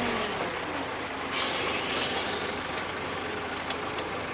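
Backhoe loader's engine running steadily as the machine drives past, a continuous rumble with a brighter hiss joining about a third of the way in.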